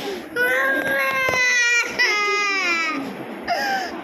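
A little girl crying during a blood draw from her arm with a syringe needle: two long, high cries of about a second and a half and a second, then a short one near the end.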